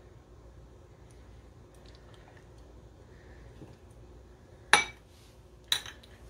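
Quiet kitchen room tone, then two sharp clinks about a second apart near the end as kitchen utensils are knocked against a glass measuring cup or set down on the counter; the first clink is the louder.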